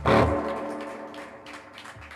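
A single sharp drum hit at the start, then a few held notes from the electric guitar ringing through its amplifier and slowly dying away.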